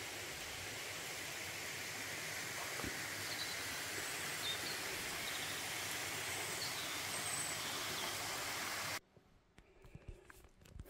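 Steady outdoor background noise in woodland, with a few faint, high bird chirps in the middle. It cuts off suddenly about nine seconds in.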